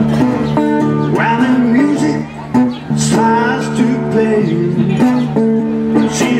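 Acoustic guitar strummed in a steady blues-pop song, with a voice singing over it through a small street amplifier.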